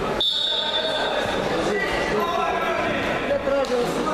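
Referee's whistle, one high steady blast lasting about a second near the start, signalling the wrestlers to begin. Crowd chatter echoes around the sports hall.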